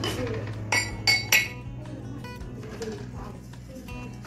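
Cups and dishes clinking together as they are handled, with three sharp, ringing clinks within the first second and a half.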